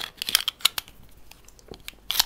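Handling of a Phoenix Arms HP22A .22 pocket pistol: a quick run of small metallic clicks and scrapes as the magazine is worked in the grip, then one more click near the end.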